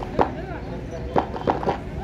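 Four sharp whacks over a background of crowd voices, one shortly after the start and three close together in the second half.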